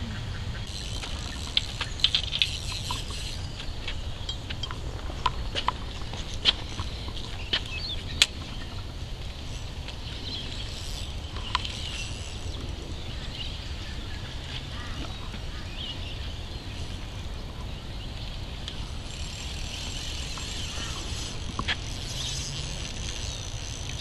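Birds chirping in high, patchy bursts over a steady low rumble, with a few scattered sharp clicks.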